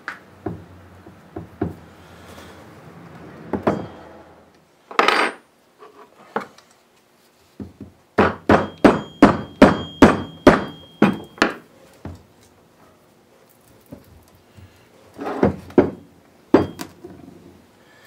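A mallet striking the axle hub of a cultipacker to take it apart: a quick run of about a dozen blows, about three a second, each with a faint metallic ring. Scattered single knocks and clatter of metal parts being handled come before and after the run.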